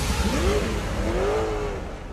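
A car engine revving twice, its pitch rising and falling each time, then fading out.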